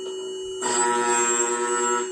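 End mill re-sharpening machine running with a steady hum. About half a second in, a loud, steady high-pitched whine sets in as the grinding wheel cuts the relief angle on a three-flute end mill's cutting edge.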